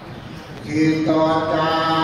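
Buddhist chanting: voices intoning on a steady held pitch, resuming after a short breath pause about half a second in.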